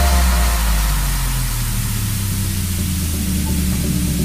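Background electronic music with low, held bass notes.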